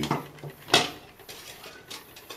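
Hand tools, a metal rasp and a plastic foot file, set down on a glass tabletop: one sharp clack about a second in, then a few faint knocks.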